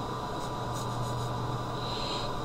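Steady low hum with an even hiss: room tone, with no distinct sound standing out.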